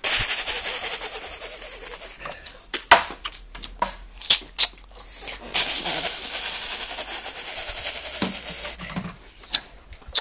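Toy machine gun's electronic firing sound, a fast hissing rattle. It plays in two bursts, the first about two seconds long at the start and the second about three seconds long from the middle, with sharp clicks and knocks between them.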